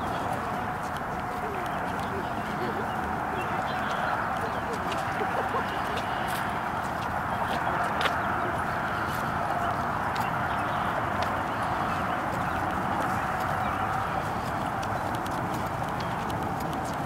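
Footsteps of several people walking on a paved path, as scattered light ticks over a steady background noise.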